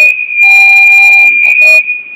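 Public-address microphone feedback: one loud, steady high-pitched squeal held throughout, swelling into harsh distorted stretches.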